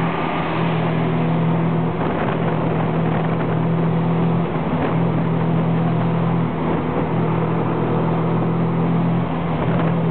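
Tuk-tuk engine running steadily under the passenger seat while the three-wheeler drives along, with road and wind noise; the engine note drops off briefly a few times.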